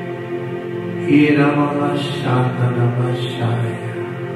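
Background music of sustained, held chords, with a man's voice chanting prayer over it from about a second in.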